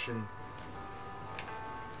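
A steady high-pitched tone with a few fainter steady hum tones beneath it, unbroken through the pause.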